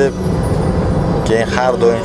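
Steady low rumble of a moving car heard inside its cabin, road and engine noise, with a man starting to speak about halfway through.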